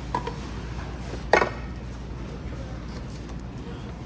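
A single sharp clack of cookware being handled, about a second and a half in, over a steady low background hum.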